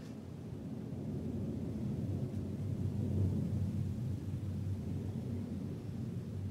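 A low, steady rumble that swells towards the middle and eases off again.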